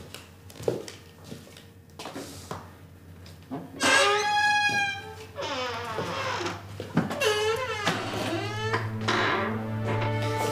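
A few soft footsteps, then a dramatic music score: high, wavering, gliding tones come in about four seconds in, and a steady low drone with held notes joins near the end.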